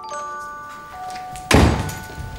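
Soft music of sustained chiming notes, then about one and a half seconds in a loud, heavy thud of a door being shut.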